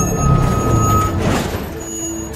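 Bus interior: a diesel engine running as a steady low rumble, with a short hiss of air, like an air brake, about a second and a half in.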